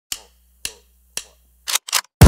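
Three sharp clicks about half a second apart, each dying away quickly, then two quicker, denser bursts of clicking near the end.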